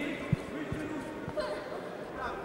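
A few dull thuds from a boxing ring, the loudest about a third of a second in, as two boxers move and exchange punches on the canvas, with voices calling out in the hall behind.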